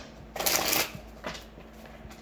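A deck of tarot cards being shuffled: one short rustling burst about half a second in, then a faint tap.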